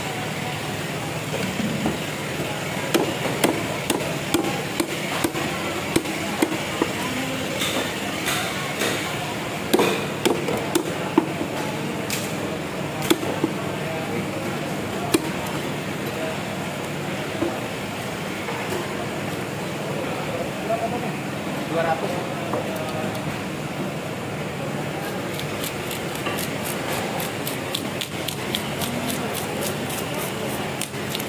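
A knife chopping fish on a wooden chopping block, with a scattered series of sharp knocks, mostly in the first half. Near the end come fast, even scraping strokes as a scaler scrapes the scales off a fish. Voices murmur in the background.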